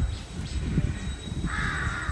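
A crow gives one harsh caw about one and a half seconds in, lasting about half a second.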